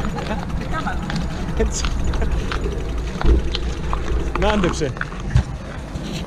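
Indistinct voices over a steady low rumble, with a sharp thump a little after three seconds and another near the end.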